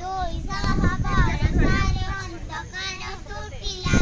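A group of children singing together in unison, high voices holding smooth, sustained notes.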